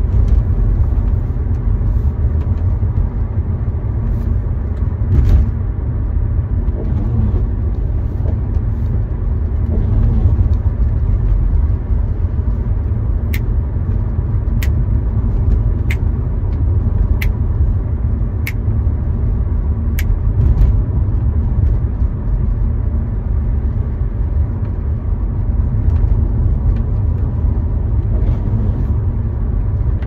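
Steady low rumble of road and engine noise inside a moving car's cabin. In the middle, six faint sharp ticks come at even intervals, about one every second and a quarter.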